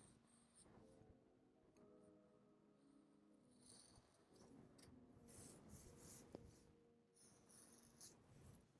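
Faint strokes of a felt-tip marker drawing on paper: several short, separate strokes, very quiet overall.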